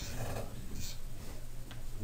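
Quiet lecture-room tone: a low steady hum with a few faint rustles and one small click near the end.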